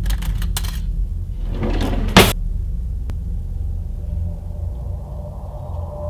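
A low, steady rumbling drone with several scraping noises over it in the first couple of seconds, the loudest a sharp scrape about two seconds in, then a single click about three seconds in.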